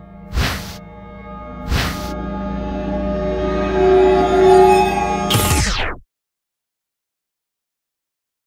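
Intro music for a software title sequence: two swishing whoosh effects in the first two seconds over a low drone, then a held synth chord that swells, ending in a quick falling sweep that cuts off suddenly about six seconds in.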